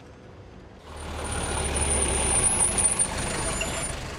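Taxi cab pulling up and braking to a stop, starting about a second in: engine rumble with a high brake squeal.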